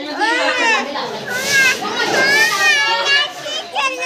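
Children's high-pitched voices calling out and chattering while playing, the pitch swooping up and down.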